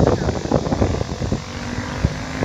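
Several racing kart engines droning in the distance as the field runs around the far side of the track.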